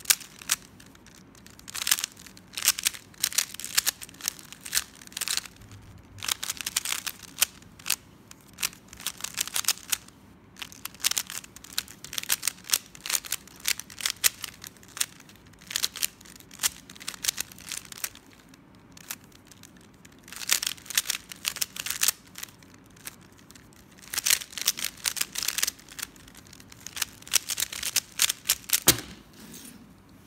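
Plastic 3x3 puzzle cube turned rapidly by hand: bursts of fast clicking layer turns broken by short pauses. A single low knock comes near the end.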